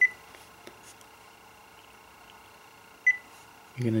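Korg Kronos touchscreen beeping at finger presses: two short, high electronic beeps about three seconds apart.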